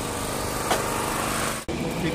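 Engine of construction machinery running steadily with a constant droning hum. It cuts off abruptly near the end.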